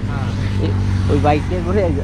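Men talking, over a steady low engine hum.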